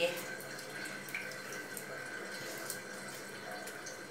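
A tap running steadily at a low level, with faint rustling of a cloth towel as a wet baby parrot is rubbed dry.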